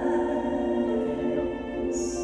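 A woman singing into a microphone over backing music, holding a long note that moves to a new pitch near the end.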